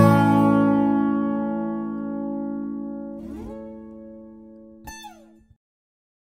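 Final chord of a sierreño-style guitar cover, on a 12-string acoustic guitar, a second acoustic guitar and an electric bass, ringing out and slowly fading. Short string slides come about three seconds in and again near five seconds, and the sound cuts off suddenly about half a second later.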